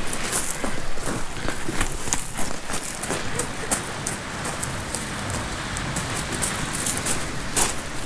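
Footsteps on a bank of loose pebble shingle: a dense run of crunching and clicking as the stones shift and knock together underfoot.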